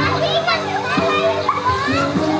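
Crowd of children shouting and calling out while playing in a swimming pool, with music playing underneath in held notes.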